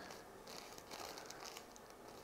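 Faint rustling and crinkling of a thin paper end wrap as it is folded over the ends of a hair section, a string of small soft crackles.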